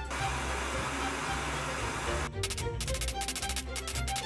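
Handheld gas torch flame hissing steadily as it heats a thin metal rod, over background music. The hiss stops a little after two seconds in, leaving the music with a quick, even tapping beat.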